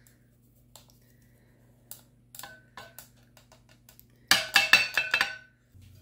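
A few faint taps, then about a second of loud clinking and clattering against a glass measuring jug as the dry ingredients are tipped in and a spatula goes into the batter.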